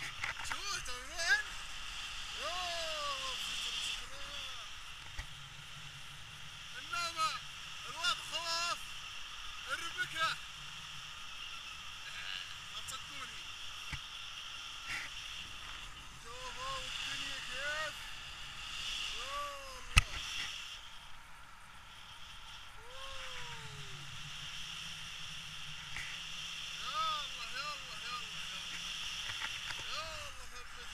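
Steady rush of air on the microphone in flight, with a man's voice in scattered short calls that rise and fall in pitch, and one sharp tap about twenty seconds in.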